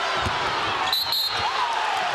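Arena crowd noise during live basketball play, with a thud of the ball on the hardwood about a quarter-second in and high, brief sneaker squeaks about a second in.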